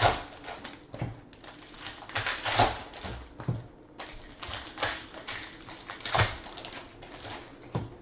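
Foil trading-card pack wrappers crinkling and tearing as packs are ripped open by hand, in a run of irregular crackling bursts.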